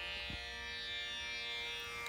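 Quiet background music of steady, held string tones.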